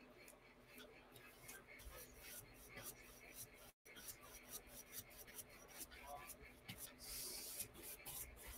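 Faint scratchy brushing of a wide flat paintbrush stroking acrylic paint across a canvas: many short strokes, with a slightly longer, hissier stroke near the end.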